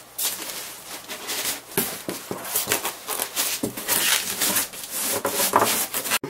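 Polystyrene foam packing blocks rubbing and scraping against a cardboard box and a plastic bag as a boxed LCD monitor is worked out by hand: an irregular run of scrapes and rustles.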